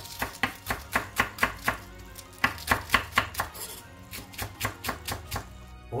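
Chef's knife chopping spring onion on a wooden board: a quick, even run of sharp knocks, about four to five a second, growing softer about halfway through.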